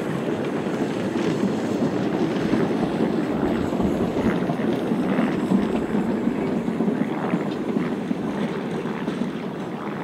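Narrow-gauge steam train rolling past: the steady rumble of the coaches' and goods wagons' wheels on the rails behind the locomotive Prince, swelling midway and easing off toward the end as the train goes by.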